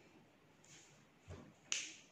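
A dull knock and then a sharp click, from a paintbrush and watercolour palette being handled while thick yellow paint is picked up.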